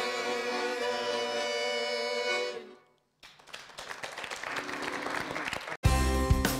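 A button accordion and a group of singers hold the final chord of a song, which fades out about two and a half seconds in. After a moment of silence a hissing, crackling noise swells steadily, and new music starts right at the end.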